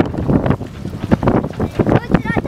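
Wind buffeting the microphone in uneven gusts, with a low rumble and faint voices in the background.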